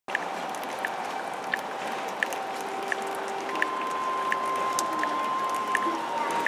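Orchestra playing softly: held notes that shift to a higher pitch about halfway through, with a light tick repeating about every 0.7 seconds.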